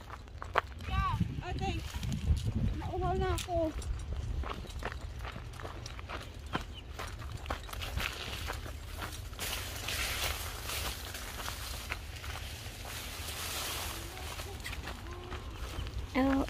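Wind rumbling on the microphone, with scattered footsteps and clicks of movement through scrub. Two short vocal calls about a second and three seconds in, and a stretch of rustling hiss in the second half.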